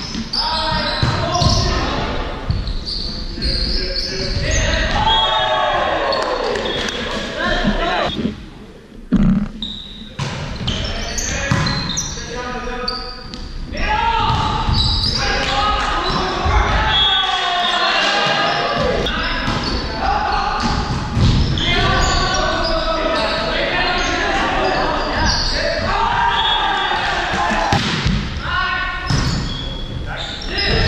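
Indoor volleyball rally sounds in a large, echoing gym: the ball being hit and striking the floor in sharp thuds, with players and spectators calling and shouting almost all the way through.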